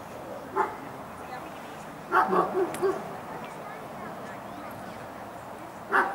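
A small dog barking in short, sharp barks: one about half a second in, a quick run of four around two seconds in, and another at the very end.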